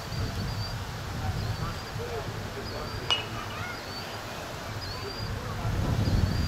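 A bird chirping over and over, one short high call about every second, over distant voices and a low outdoor rumble. A single sharp click about halfway through.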